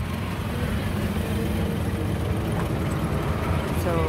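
A jeep's engine running at low speed, heard from inside the open cab as the vehicle rolls slowly onto a fuel station forecourt; the hum gets a little louder about half a second in.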